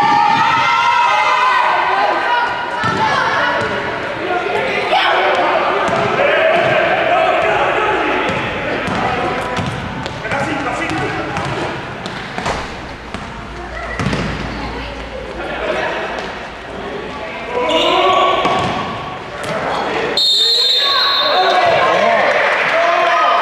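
Basketball being dribbled and bounced on an indoor court during play, with players' and spectators' shouts, all echoing in a large sports hall.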